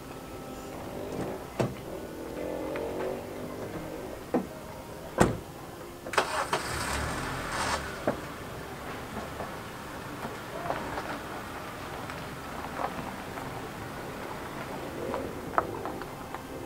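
A car engine cranking and starting in a burst of about two seconds, just after a sharp thud, with scattered clicks and knocks around it.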